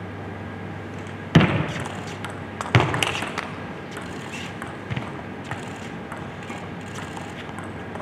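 Table tennis rally: light clicks of the ball striking bats and the table, in an echoing hall, with two louder thuds in the first three seconds.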